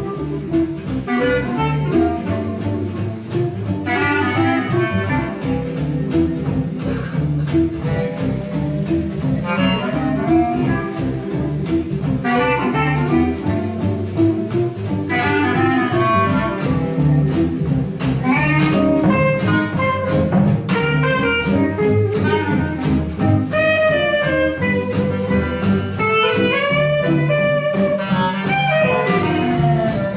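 Small traditional jazz band playing live: two clarinets play the melody together over double bass, guitar and drums. About halfway through, a steady cymbal beat of about two strokes a second comes in.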